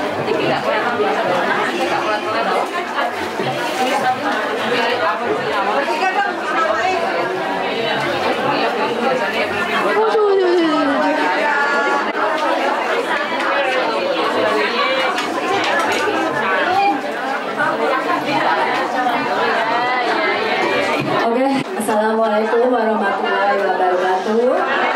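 Crowd chatter: many voices talking over one another at a steady level in a large room.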